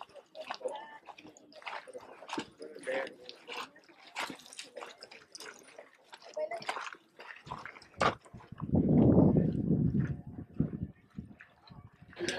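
Faint chatter of people talking in the background, in short scattered snatches. About nine seconds in, a louder low rumble lasts roughly two seconds.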